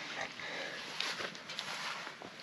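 Hiker's footsteps scuffing and stepping on a rocky dirt trail, with heavy breathing from the climb.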